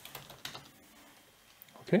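Computer keyboard typing: a few scattered, faint keystrokes.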